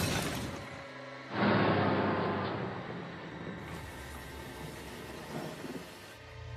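Horror-film score: a sudden loud hit a little over a second in that slowly dies away, under eerie music.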